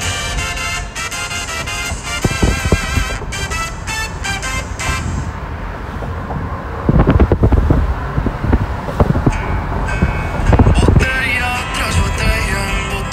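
A song with a wavering, vibrato melody plays, then from about seven seconds in wind buffets the microphone in loud, irregular gusts through the open car window, with road noise underneath, while the music continues faintly.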